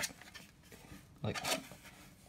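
Quiet room tone with two short spoken words. Between them are faint rustles and knocks of hands handling a boxed computer power supply.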